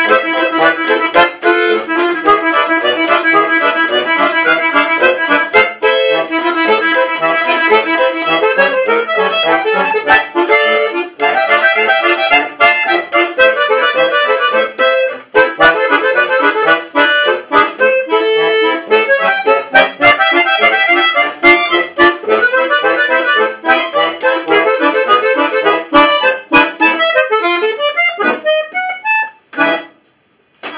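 Bayan (chromatic button accordion) played solo, with dense, quickly changing notes and chords. Near the end the playing thins out and breaks off.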